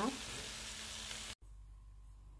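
Shrimp frying in butter: a steady sizzle that cuts off abruptly about one and a half seconds in, leaving faint room tone with a thin steady tone.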